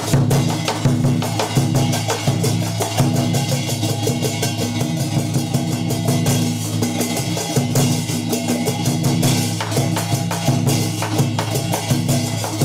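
Music with fast, steady drum and percussion beats over a low sustained tone.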